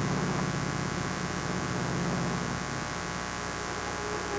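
Steady drone of aircraft engines on an old film soundtrack, over constant hiss; the low drone thins out about two-thirds of the way through.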